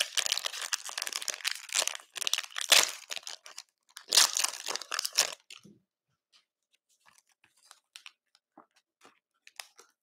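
Foil trading-card pack wrappers crinkling as they are handled, in three bursts over the first five and a half seconds, then only a few faint ticks.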